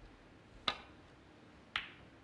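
Two sharp clicks about a second apart: a snooker cue tip striking the cue ball, then the cue ball clicking against an object ball.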